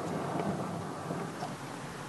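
Steady low rumble of a car moving slowly, heard from inside the cabin.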